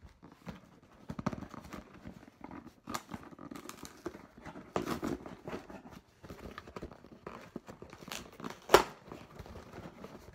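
Cardboard shipping box being handled and opened: irregular scraping and rustling of cardboard and packing tape, with one sharp crack near the end that is the loudest sound.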